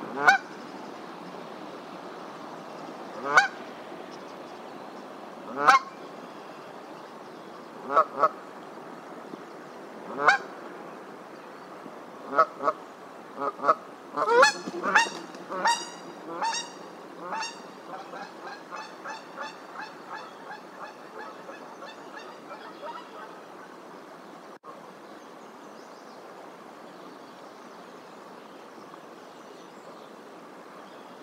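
Canada goose honking: loud single honks every two to three seconds, then a quicker run of honks about halfway through that trails off into a rapid series of fainter calls and dies away, leaving a steady background hiss.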